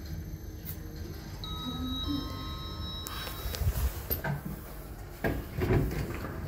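Kone Sigma lift's electronic arrival chime, two steady notes one after the other about a second and a half in. It is followed by the rumble of the lift's sliding doors and a few knocks near the end.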